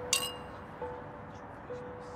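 Two wine glasses clinked together in a toast: one bright ring just after the start that dies away quickly. Soft background music with held notes plays underneath.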